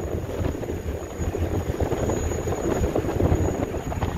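Steady rumble of a car ferry under way, with wind buffeting the microphone and water rushing past the hull.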